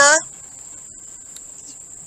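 Insects, crickets, trilling steadily in one continuous high-pitched band. A voice finishes a word right at the start.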